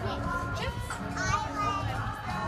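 Children's voices over background music with long held notes; one child calls out in a high voice in the second half.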